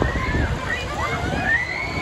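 Riders screaming on a spinning fairground thrill ride over a steady rushing noise. One long scream rises and falls from a little past the middle.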